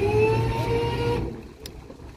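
Rescue boat's engines throttling up: a whine that rises in pitch and then holds steady over a low drone, fading away about a second and a half in.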